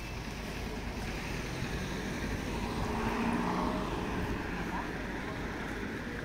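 Outdoor street ambience: a steady low rumble, louder around the middle, with faint voices.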